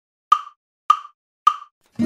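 Three evenly spaced short clicks, a bit over half a second apart, counting in the song's tempo before the music starts.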